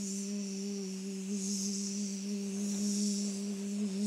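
A steady electronic hum held at one low pitch, with a hiss above it that swells and fades twice.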